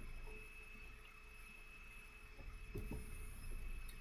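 Faint background hum and hiss of a recording setup with a thin, steady high whine, and one or two soft clicks about three seconds in.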